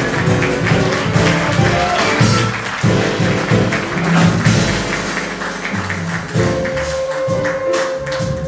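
Live jazz quintet playing: violin and flute together over grand piano, double bass and drums. A long held note comes in from about six seconds in.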